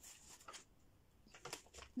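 Near silence with a few faint taps and rustles of hands handling things, about half a second in and again around a second and a half.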